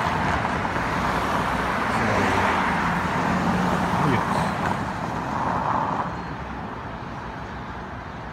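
City street traffic: cars and a van driving past with tyre and engine noise, fading away over the last couple of seconds.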